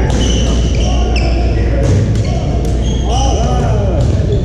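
Badminton play on a hardwood gym floor: short high squeaks of court shoes and a few sharp clicks of racket strikes, over the echoing hall chatter of players on the other courts.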